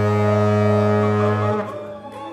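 A jazz band holds one long, low unison note on trombone, saxophone and bass. The note cuts off about a second and a half in, leaving a quieter ring-out.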